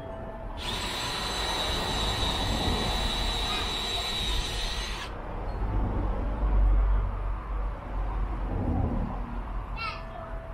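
Handheld power drill running at a steady speed with a constant high whine for about four and a half seconds, then stopping suddenly.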